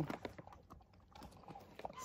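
Faint, irregular clicks and crunches of dogs chewing freeze-dried bully bite treats.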